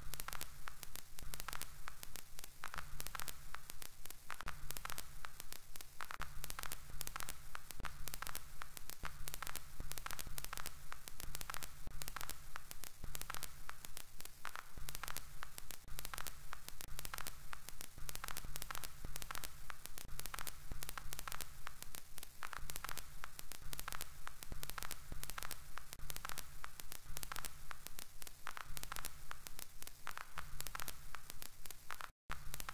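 Dense crackling static over a low hum.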